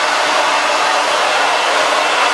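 Handheld blow dryer running on high with the cool-shot button held: a loud, steady rush of blown air over a faint motor hum.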